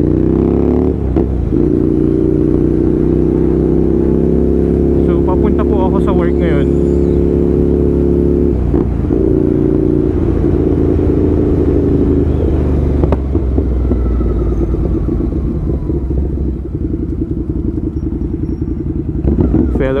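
Ducati Scrambler's L-twin engine while riding: the revs climb in the first second, with brief breaks for gear changes about a second in and near nine seconds, then it runs steadily under throttle and eases off near the end.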